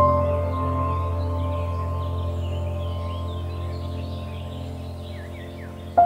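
Soft ambient background music: a held chord that slowly fades away. Faint bird chirps sound behind it.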